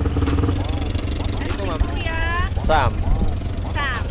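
Small four-wheeler engine idling with a steady low hum, its even tones fading about half a second in, with a woman's short "oh" exclamations over it.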